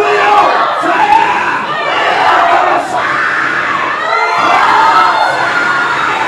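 A church congregation shouting together, many voices overlapping at once and kept up loudly throughout.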